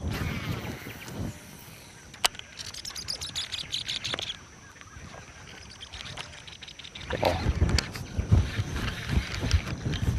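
Fishing from a boat: a fishing reel ticks quickly as a surface lure is retrieved. From about seven seconds in come repeated low thumps and splashing as a peacock bass strikes the lure and the hooked fish thrashes at the surface.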